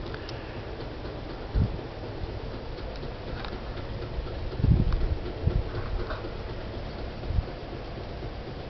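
Handling noise from a handheld camera: a few low thumps over a steady hiss, the loudest a little before the middle.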